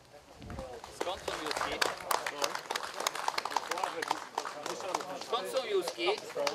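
A small crowd clapping, the claps starting about a second in, with people talking underneath.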